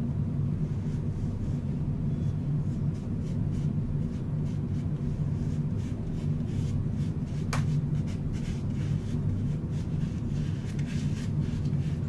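Faint, irregular soft rubbing of a makeup puff spreading BB cream over the skin, over a steady low hum. There is one sharp click about seven and a half seconds in.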